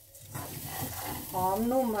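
Rice and ginger being stir-fried in a nonstick pan before the rice is cooked: a spatula stirring and scraping through the grains over a light sizzle, starting a moment in.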